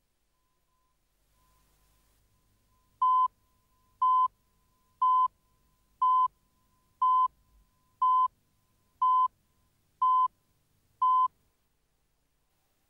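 Video countdown leader beeps: nine short, identical beeps of one steady high tone, once a second, starting about three seconds in.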